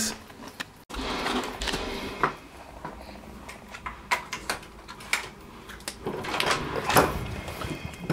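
Hotel key card going into an electronic door lock, then the handle and door working as it is unlocked and opened: a series of separate clicks and knocks with handling noise between them.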